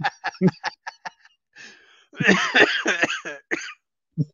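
A man laughing in quick short bursts, then a louder burst of laughter about two seconds in.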